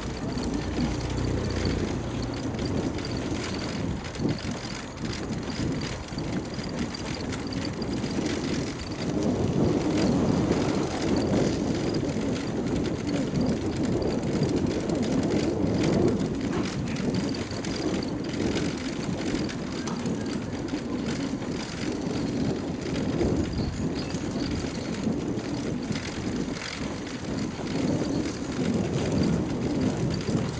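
Bicycle rolling over a brick-paved street, heard from a camera mounted on the bike: a steady rumble of the tyres on the pavers with small rattles from the bike.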